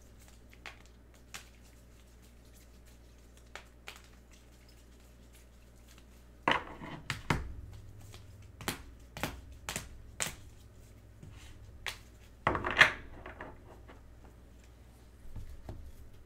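Hard plastic card holders being handled and set down on a table: scattered sharp clicks and clacks, with two louder rustling, clattering bursts about six and twelve seconds in.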